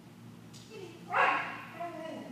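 A dog gives one sharp, loud bark about a second in, with a fainter, shorter call near the end.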